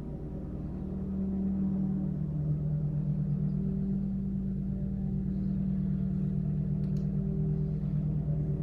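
A steady low droning hum made of several held pitches, swelling slightly about a second in and then holding level, with a couple of faint clicks near the end.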